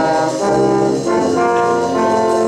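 Brass band with tubas, euphoniums and cornets playing held chords that change about half a second in and again about a second in.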